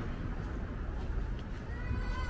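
Street ambience: a steady low rumble, with a high-pitched voice starting near the end.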